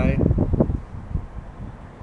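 Puffing on a tobacco pipe close to a webcam microphone: a quick run of low puffs and breath buffeting the mic for about the first second, then dying away to faint hiss with a few small pops.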